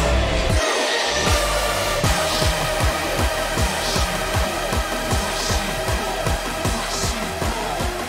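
Hardstyle dance music from a DJ mix: sustained synth chords over a heavy kick drum. The kick drops out for a moment about half a second in, then comes back as a fast, steady beat.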